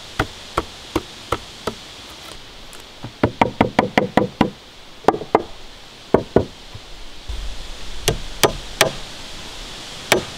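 Claw hammer driving nails into a wooden floor frame. Evenly spaced strikes come about three a second, then a quick flurry of blows about three seconds in, and a few more spaced strikes later on.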